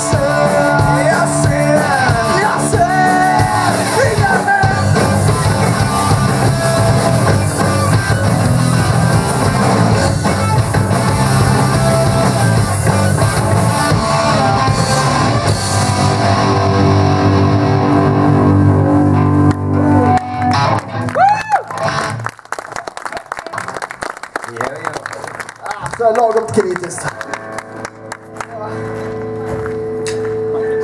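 Rock band playing live: electric guitar, bass guitar, drums and male vocals. The cymbals drop out about halfway through and the song ends about two-thirds of the way in, leaving scattered notes and then a single held note near the end.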